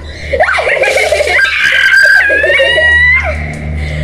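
A girl letting out a long, high-pitched scream as a bucket of water is dumped over her head, with water splashing about a second in and giggling around it.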